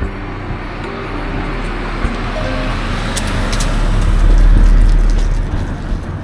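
A road vehicle passing close by: its noise swells steadily to a peak about four and a half seconds in, then fades, over faint background music.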